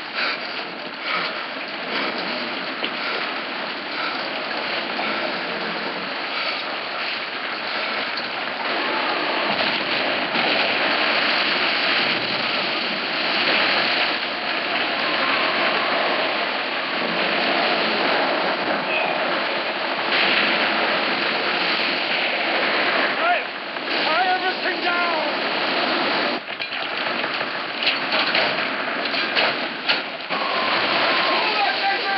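Storm at sea: heavy rain and crashing water as a dense, steady roar of noise, growing louder about ten seconds in. A short wavering pitched sound rises above it about 24 seconds in.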